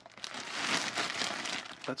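Plastic candy bag crinkling continuously as it is handled and turned over in the hand, a dense crackling rustle of the plastic film and the wrapped gum pieces inside.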